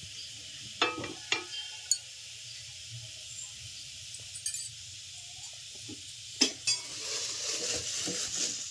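Water droplets sizzling on a hot non-stick tawa over a gas burner, a steady high hiss broken by a few sharp clinks. Near the end a ladle clinks and scrapes in a steel pot as batter is stirred.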